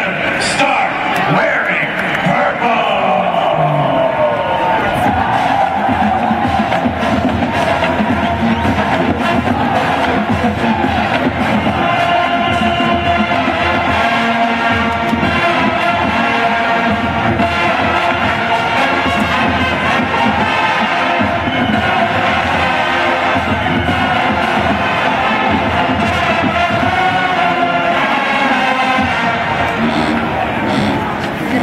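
Full college marching band playing on the field, brass and drums, settling into long held chords in the second half, with crowd noise from the stands around it.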